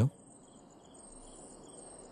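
Crickets chirping: faint, evenly pulsed high trills at a steady pace.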